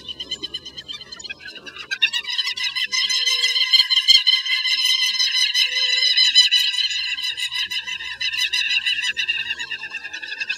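Southern lapwings calling in a territorial display: a dense, shrill run of rapid repeated notes, several birds at once, starting about two seconds in.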